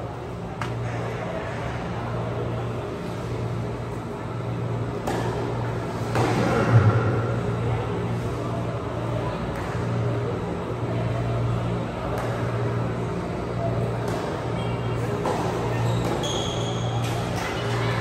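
Tennis rally in a reverberant hall: sharp knocks of racket strikes and ball bounces a second or a few seconds apart, the loudest about seven seconds in. Under them runs a steady low hum with faint background music and voices.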